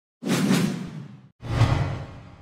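Two whoosh sound effects of an animated logo sting, each coming in sharply with a low rumble beneath and fading away, the second about a second after the first.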